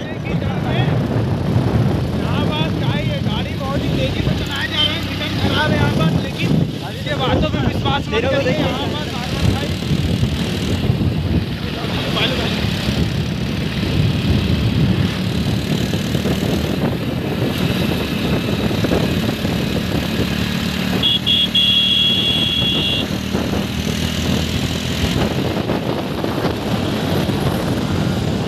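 Motorcycle running at road speed, with wind rushing over the microphone and voices talking over the noise. About three-quarters of the way in there is a high-pitched beep lasting about two seconds.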